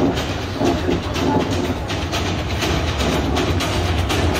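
Recorded train sound effect: a steady rumble with a regular clickety-clack of wheels on rail joints.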